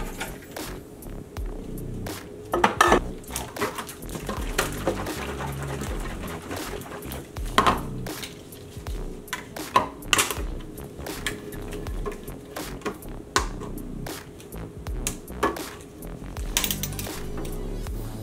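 Irregular clicks and knocks of hard plastic as a beverage dispenser's lid and spigot are handled, then a hand-held can opener working into a metal juice can.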